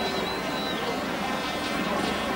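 Steady hubbub of a large stadium crowd at a speedway meeting, with a thin high whistle that dies away before one second in.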